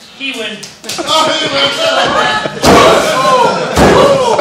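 Two loud sharp impacts, about a second apart in the second half, from wrestlers striking each other or hitting the ring, over shouting voices.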